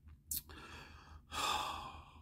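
A man's audible sigh: a breathy exhale without voice, starting a little past halfway and lasting most of a second, with a faint short tick before it.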